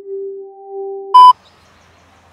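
Electronic tones, not from anything in the room: a steady single tone joined by a higher one partway through, cut off by a short, very loud beep just over a second in. After the beep only faint room noise remains.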